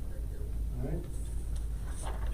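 A steady low hum, with faint, indistinct speech about a second in.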